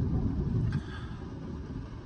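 Low rumble of jet aircraft flying over, heard from inside a car; it dies down a little under a second in and stays quieter after.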